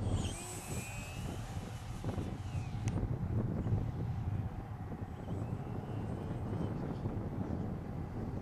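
High-pitched whine of the HobbyKing Moray pylon racer's brushless electric motor and propeller on a fast low pass, dropping sharply in pitch about three seconds in as it goes by, then fainter as it climbs away.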